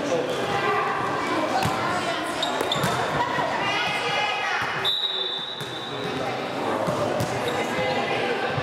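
A handball bouncing on a hard sports-hall floor among echoing shouts and footsteps. About five seconds in, a steady high referee's whistle blows for about two seconds.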